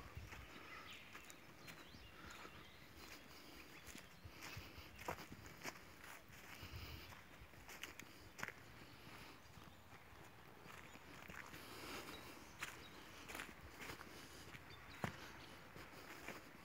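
Faint footsteps on grass and dry leaves, uneven, with a few sharper clicks, such as twigs snapping underfoot.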